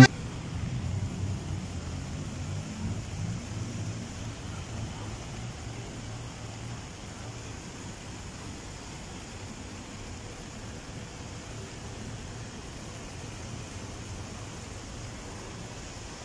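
Steady outdoor noise of a flooded street: traffic and running water, with a low rumble that fades over the first few seconds.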